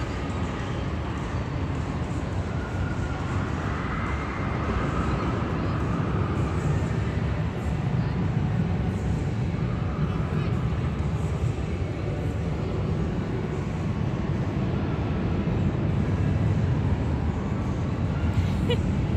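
Steady low rumble of an indoor amusement park, with indistinct voices in the background.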